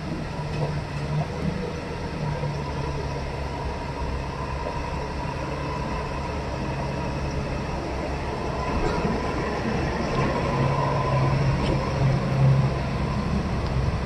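Engines of a loaded truck and other vehicles moving slowly over a rough, rubble-strewn road close by. A steady low drone grows louder in the second half as the truck passes.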